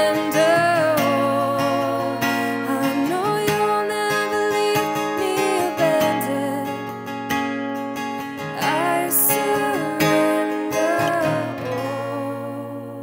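Acoustic guitar strumming under a held, wordless vocal line, the song's outro, slowly growing quieter toward the end.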